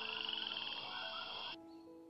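A frog chorus, a dense high trilling, over sustained background music notes. The chorus cuts off suddenly about one and a half seconds in, and the music carries on.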